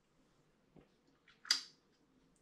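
A person taking a sip of liquid from a plastic hydrometer tube: one short, sharp slurping mouth sound about one and a half seconds in, with a tiny click just before. Otherwise near silence.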